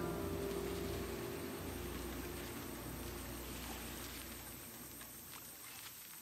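The last chord of an acoustic guitar ringing out and slowly dying away, leaving only a faint steady hiss and low hum by the end.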